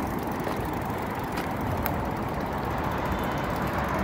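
Steady road traffic noise from a busy main road, swelling slightly toward the end.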